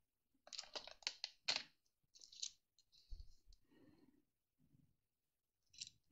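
Faint, scattered small plastic clicks and taps from diamond-painting work: a cluster of light ticks in the first two and a half seconds and a soft bump about three seconds in, then near silence.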